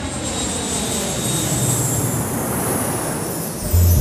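Jet airliner engine noise, a steady rush that slowly falls in pitch as the aircraft passes.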